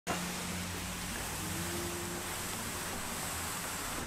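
A steady, even hiss with a faint low hum underneath.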